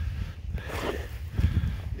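Footsteps on wood-chip mulch, with a low rumble on the microphone and a heavier step about one and a half seconds in.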